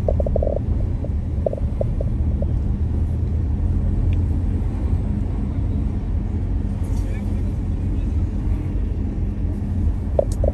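Steady low road and engine rumble of a car driving at city speed. A few brief rattling bursts come in the first couple of seconds.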